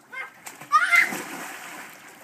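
A child jumping into a pool: a short high-pitched shout, then a loud splash about three-quarters of a second in, with the water settling afterwards.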